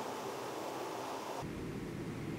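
Steady hiss of background recording noise with no distinct event. About one and a half seconds in, it changes abruptly to a duller, lower rumble.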